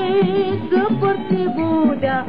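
A 1950s Malay song: a voice sings a wavering, vibrato melody over a band accompaniment with a steady bass beat.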